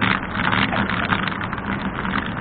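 Steady noise of car traffic on the adjacent road, heard from a camera on a moving bicycle.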